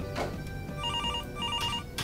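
Desk telephone ringing: two short electronic trills, each a quick run of about four beeps, about a second in.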